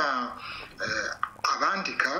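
Only speech: a person talking, with no other sound.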